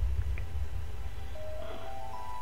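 Film trailer soundtrack: a steady low rumbling drone, with held musical tones coming in near the end.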